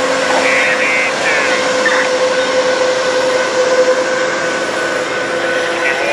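Amtrak passenger train rolling slowly past at close range as it slows for its station stop: the trailing GE P42 diesel locomotive, then the baggage car and bilevel Superliner cars. A steady rumble of wheels and engine, with one held tone running over it.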